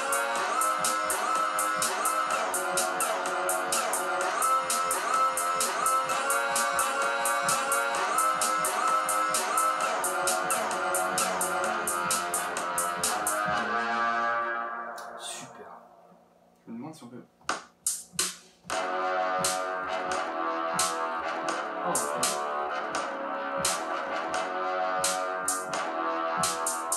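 Loop-based electronic music played live on the pads of the Drum Pads 24 app on a tablet: a fast, even hi-hat-style beat under layered melodic loops. The music fades out about fourteen seconds in, a few single pad hits follow, and a new loop starts a few seconds later.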